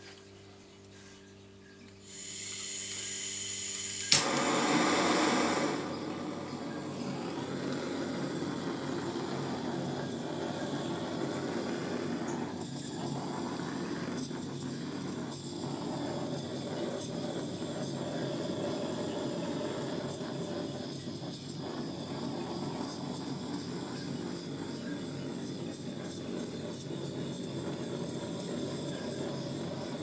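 Handheld butane torch: gas starts hissing about two seconds in, a sharp igniter click comes about two seconds later, then the flame burns with a steady rush. It is being played over wet acrylic pour paint to pop bubbles and bring up cells.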